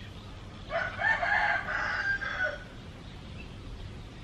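A rooster crowing once, a single call of about two seconds starting just under a second in.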